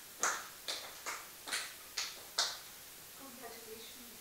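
Slow, deliberate handclapping: six sharp claps at a steady pace of about two a second, stopping about two and a half seconds in. A faint voice follows near the end.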